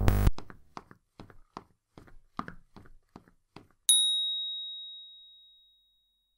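Cartoon sound effects for an animated logo: a short loud thump at the start, a run of light footstep-like ticks about three a second from the little walking figure, then a single bright bell-like ding about four seconds in that rings away over about a second and a half.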